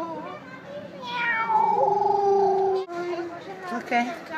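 Domestic cat meowing: a short call, then one long drawn-out meow lasting nearly two seconds, falling slightly in pitch, and a brief call after it.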